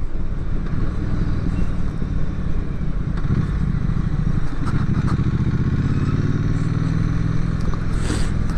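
Triumph Street Twin's 900 cc parallel-twin engine running steadily under way, mixed with wind and road noise. The engine note changes briefly about halfway through, then runs on steady.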